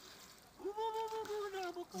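A person's voice holding one long, steady vowel for over a second, starting about half a second in and sagging slightly in pitch.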